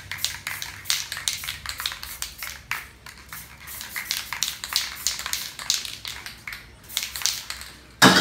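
Quick, irregular scratching and tapping of a hand tool working on the surface of a spray-painted board, over a low hum.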